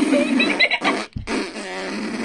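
A person blowing a raspberry, a buzzy fart noise made with the lips, in two long blasts with a short break about a second in.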